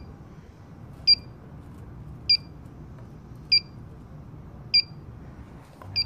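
Combustible gas leak detector beeping slowly and evenly, a short high beep about every 1.2 seconds, as its probe is held at a pinched-off R290 tube: the steady idle rate means it finds no leak at the pinch-off.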